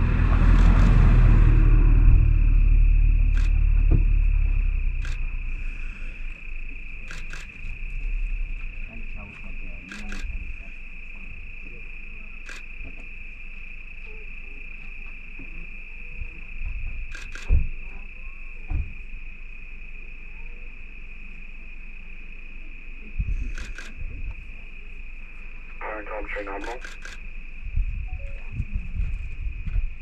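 Crickets chirping in a steady high trill. A low rumble in the first few seconds fades out, with scattered short clicks after it.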